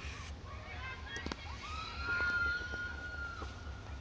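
Distant girls' voices from the soccer field, with one high-pitched scream held for about two seconds in the middle. A low steady hum runs underneath.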